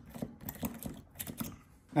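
Tapered hand tap in a T-handle tap wrench cutting M6 threads into a metal wheel insert, giving a run of small, irregular clicks and ticks as the tap turns and the chips break. The clicks die away shortly before the end.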